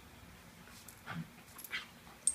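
Two small dogs, a Morkie and a Schnauzer, play-wrestling; one gives two short whimpering play noises, one about halfway through and one near the end.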